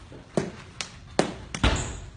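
Eskrima sticks clacking against each other in quick sparring strikes: about five sharp, irregularly spaced knocks, the heaviest a duller thud near the end.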